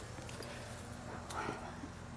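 Faint footsteps and handling noise: a few soft knocks over a quiet outdoor background.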